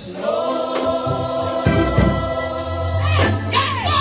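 Gospel choir singing, holding a long chord under a steady low note, with a lead voice sliding in pitch near the end.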